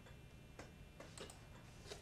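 Faint, scattered clicks from operating a computer, about five in two seconds, over near-silent room tone.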